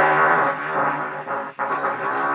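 Trumpet playing low, buzzy pedal tones below its normal range: a held note that wavers in pitch, then a short break and a new low note about one and a half seconds in.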